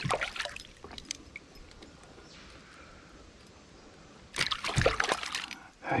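Water splashing and dripping as a hooked Australian bass is lifted out of the creek on a lip grip, with a short flurry of splashing about four and a half seconds in after a quiet stretch.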